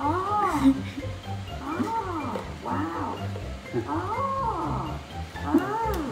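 Electronic Chewbacca mask playing Wookiee roars, about five in a row, each rising then falling in pitch.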